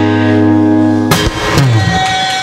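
Acoustic guitar closing out a song: a held chord ringing, then a last chord struck about a second in, with a low note falling in pitch near the end.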